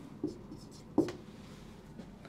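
Dry-erase marker writing numbers on a whiteboard: a few faint short strokes, with one sharp tap about a second in.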